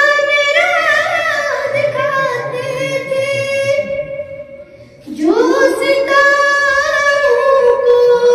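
A young girl singing an Urdu nazm into a microphone, in long drawn-out melodic phrases, with a brief break about four seconds in before the next line begins.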